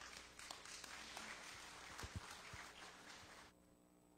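Faint applause from a congregation, a soft patter of clapping that cuts off abruptly about three and a half seconds in.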